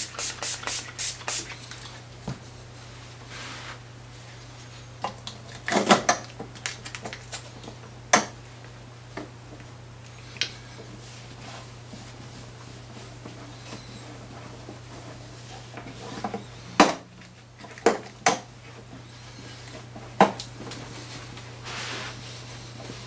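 Handling sounds at a workbench while a polishing cloth is wiped over a hollowbody guitar's lacquered top: a quick run of about six sharp clicks at the start, then single clicks and knocks every few seconds with soft rubbing between them. A steady low hum sits underneath.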